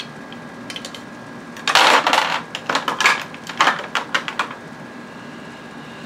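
Makeup containers clicking and clattering as they are picked through. A quick run of clicks and rattles starts about two seconds in and dies away about halfway through.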